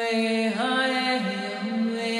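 A woman chanting long, wordless held tones into a microphone, her voice stepping between a few sustained notes.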